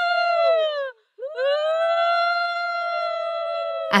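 Conch shell blown in long held notes: one note sags in pitch and stops within the first second, and after a brief breath a second note swells up and is held steady to the end.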